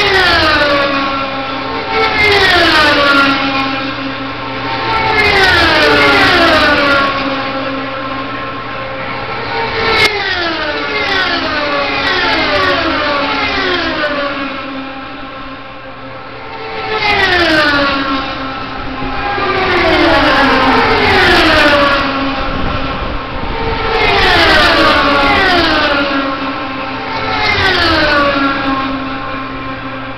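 IndyCar race cars, naturally aspirated Honda V8s, passing at full racing speed. Each car's high engine note drops sharply in pitch as it goes by, and the cars come in bunches every two to four seconds.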